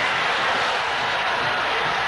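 Steady, even noise of a stadium crowd in a televised football match.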